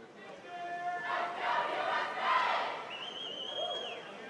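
Swimmers and spectators on a pool deck yelling and cheering, opening with one drawn-out shout and rising to a burst of many voices. Near the end a high whistle sounds for about a second.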